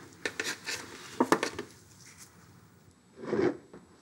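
Palette knife scraping and tapping acrylic paint: a quick run of short scrapes and clicks in the first second and a half, then one longer, louder scrape near the end.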